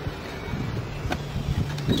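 Steady low wind rumble on the microphone, with a faint click about a second in.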